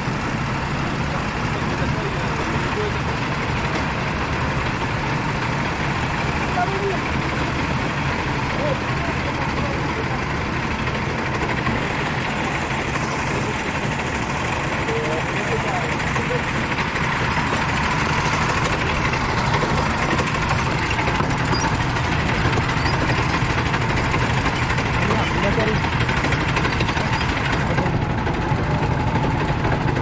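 Several rental go-kart engines idling together on the starting grid, a steady drone, with indistinct voices over it.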